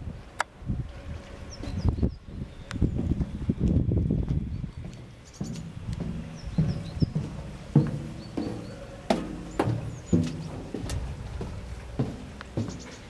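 Footsteps on the steel deck of a small boat: irregular knocking steps, each with a low hollow ring from the hull.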